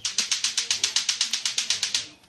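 A rapid, evenly spaced run of sharp mechanical clicks, about a dozen a second, like a ratchet, starting and stopping abruptly.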